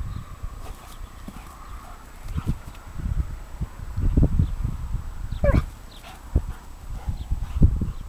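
A Pharaoh hound and a Bengal cat playing on grass: irregular dull thumps and scuffling as they move, with one short pitched yelp about five and a half seconds in.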